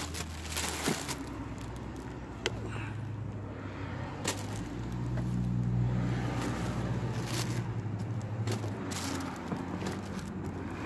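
A car engine's low hum grows louder about halfway through and eases off near the end, with a few light clicks and rustles of items being handled.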